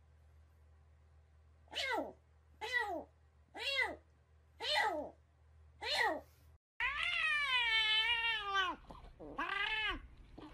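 A spotted cat meowing with its head in a mug of water: five short meows about a second apart, each falling in pitch. After a cut, a cat gives one long, drawn-out meow and then a shorter one.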